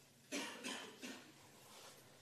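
Faint coughing: about three short coughs in the first second, then quiet room tone.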